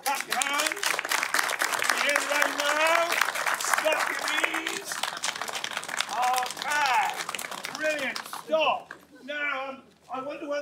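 A crowd snapping their fingers together, a dense, even patter of clicks made to imitate falling rain, with voices over it; the clicking dies away about a second and a half before the end.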